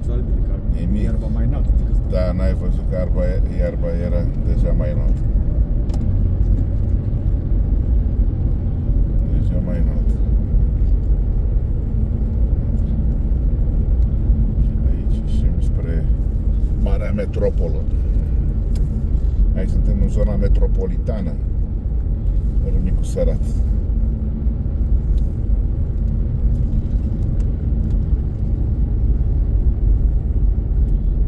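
Steady low rumble of a car driving along a paved road, heard from inside the cabin: engine and tyre noise.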